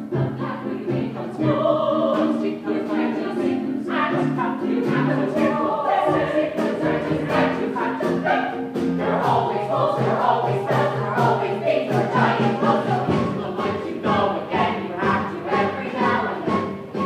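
A musical-theatre cast singing together in chorus, holding long notes with several voices at once.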